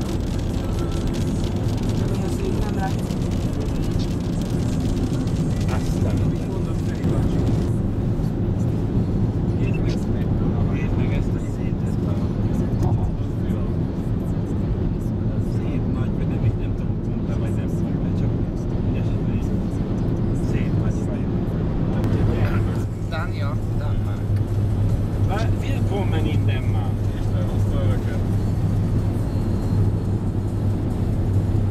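Car cabin noise at motorway speed: a steady low drone of road and engine, with a low hum that grows stronger about three-quarters of the way through.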